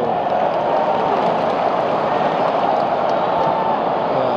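Large football stadium crowd during live play: a dense, steady mass of voices from the stands, with no single event standing out.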